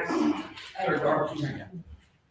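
People's voices, talking and laughing in two short stretches, then fading off near the end.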